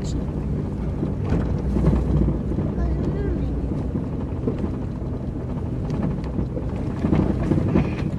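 A 4x4's engine running steadily at low speed, heard from inside the cabin, with scattered knocks and rattles from the vehicle on a rough dirt track.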